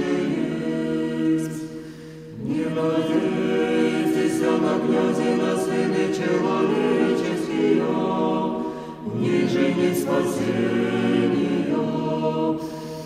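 Russian Orthodox church choir singing liturgical chant a cappella, voices held in sustained chords, with short pauses between phrases about two seconds in and again near nine seconds.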